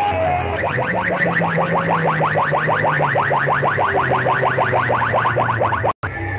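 Loud electronic music from a DJ sound system's horn loudspeakers. Soon after the start it turns into a rapid train of short rising chirps, several a second, over a steady low tone, and this stops abruptly just before the end.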